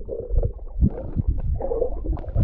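Muffled underwater sound picked up by a submerged camera: water moving around the housing as it is carried along, heard as low, irregular surges with a dull haze above them.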